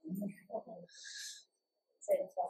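Faint, low human voice sounds: a few short murmured syllables in the first second, then a soft hissing 'sh'-like breath.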